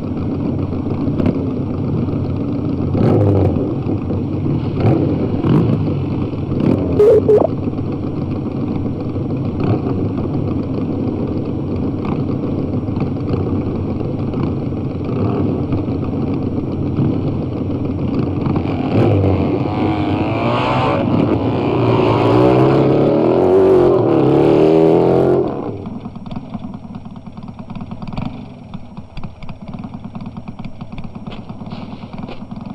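Several motorcycle engines running and revving on an old, dull-sounding film soundtrack. About two-thirds of the way through they swell into a louder stretch of rising and falling revs, then suddenly drop to a quieter running.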